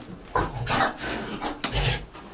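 Young Pietrain-cross piglets, about ten days old, grunting in a pen: a run of short grunts in quick succession.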